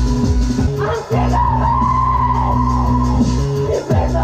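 Live electronic music from synthesizers: a steady low drone with a pulsing beat drops out briefly about a second in. A high held tone then wavers above it, and a quick pitch glide and short dip come near the end.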